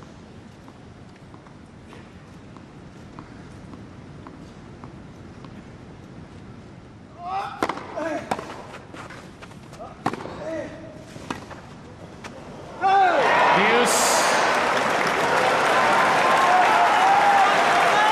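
Tennis rally on a grass court: a quiet, hushed stadium with faint ball bounces, then sharp racket strikes of the ball over several seconds, with short gasps from the crowd. About thirteen seconds in, the crowd breaks into loud cheering and applause as the point ends.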